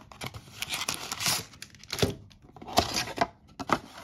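Foil trading-card packs and a cardboard blaster box being handled: a run of short crinkles, rustles and scrapes with a few sharp clicks, loudest about a second in and again near three seconds.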